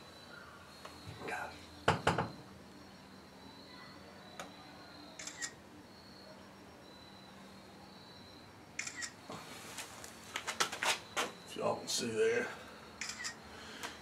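Smartphone camera shutter clicks and light handling knocks as photos are taken. A few are scattered through the first half, then a quick run of them comes near the end.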